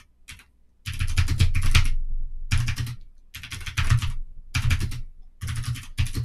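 Typing on a computer keyboard: about five bursts of rapid keystrokes separated by short pauses.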